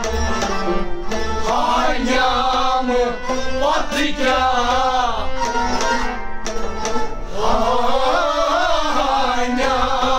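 Kashmiri folk singing by men's voices, accompanied by a steady hand-played rhythm on a noot, a large clay pot drum, whose deep strokes pulse throughout. The voices come in about one and a half seconds in, drop out briefly around six seconds, and return near seven and a half seconds.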